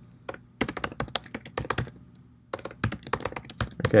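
Typing on a computer keyboard: two quick runs of keystrokes with a short pause of about half a second in the middle.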